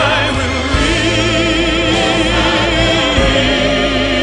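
Music: a singer holds one long note with vibrato over a choir and sustained low accompaniment, in a classical-style ballad arrangement.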